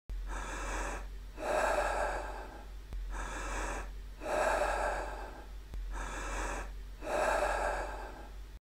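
Deep, forceful breathing in and out in the style of Wim Hof power breathing: about three full breath cycles, each taking roughly three seconds, over a steady low hum.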